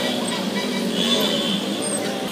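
Street traffic noise on a wet road: vehicle engines running steadily close by.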